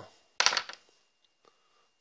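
A single short clink of a small metal RC differential part handled against a brass tin on the workbench, about half a second in, dying away quickly.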